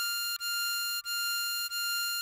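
Diatonic harmonica sounding the hole 9 draw note (F6), a clear, steady high tone restarted several times at the same pitch.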